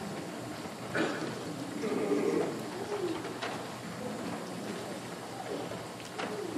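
Soft murmured voices in a quiet hall, with a few light knocks as a metal water pitcher and bowl are handled during ritual handwashing.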